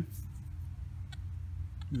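Quiet background: a low steady rumble with a faint steady hum over it and a few light ticks.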